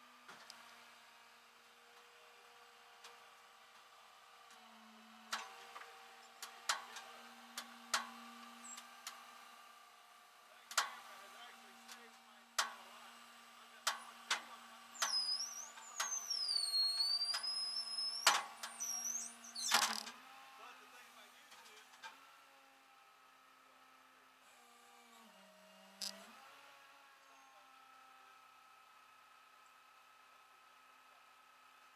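Sharp metal clanks and clicks as a van's wheel tie-downs are worked loose on a rollback tow truck's steel bed, over the steady drone of an engine that dips in pitch late on. A high wavering squeal sounds for a few seconds in the middle of the clanking.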